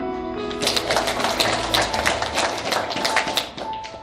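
Paper sheets being handled and turned close to a podium microphone, giving a rapid run of crisp crackling clicks that stops shortly before the end. A steady music bed plays underneath.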